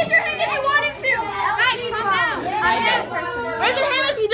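Children's voices talking over one another, a steady stretch of overlapping chatter with no clear words.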